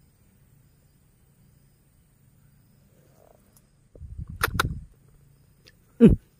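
A quiet wait, then a short loud scuffle with two sharp clicks about four and a half seconds in as an eel strikes and tugs the bait on its line into its burrow.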